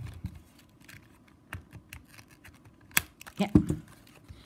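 Scissors cutting plastic strapping band: a few sharp snips and clicks, the loudest about three seconds in.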